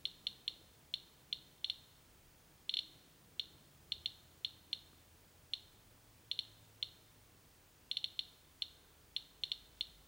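Geiger counter (Radiation Alert Inspector EXP with pancake probe) clicking at random intervals, about three clicks a second, sometimes in quick bunches of two or three. Each click is one detected count of radiation from the wood-look ceramic tile under the probe, which reads about 100 counts per minute.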